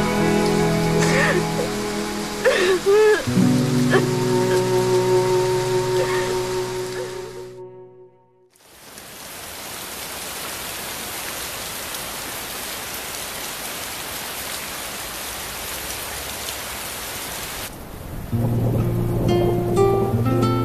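Soft background score with a woman sobbing over it, fading out about eight seconds in. Then steady rain falling, which stops near the end as an acoustic guitar song begins.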